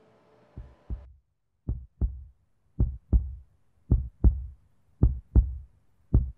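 Heartbeat sound effect: slow pairs of low thumps, lub-dub, about one beat a second, five beats, the first ones quieter and the rest louder. It is a film cue for nervous tension.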